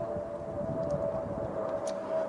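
A steady single tone held without change over a low rumbling background.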